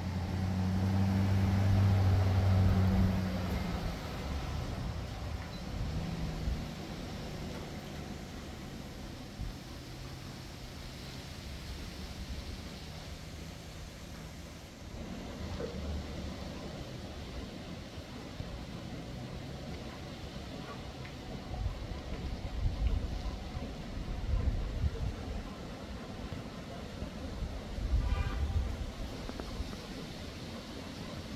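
A vehicle engine running with a steady low hum, loudest in the first three seconds and then fading to a weaker hum. A few irregular low rumbles come near the end.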